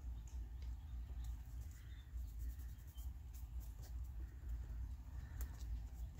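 Faint light ticks and rustles of paper being handled and pressed flat by hand, over a steady low hum.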